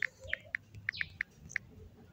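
Smartphone on-screen keyboard key-press sounds as a word is typed: about seven short, faint, high tick-like beeps in quick succession over the first second and a half.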